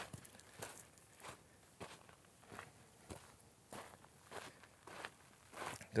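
Faint footsteps at a steady walking pace on a sandy, gravelly dirt trail.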